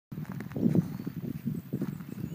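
A horse walking on dry dirt, its hooves landing in a run of dull, irregular thuds.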